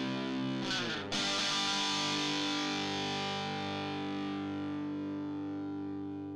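Outro music on distorted electric guitar: a held chord, a new chord strummed about a second in, then ringing out and slowly fading.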